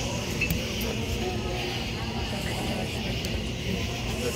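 Restaurant patio ambience: faint, indistinct chatter of other diners over a steady low hum.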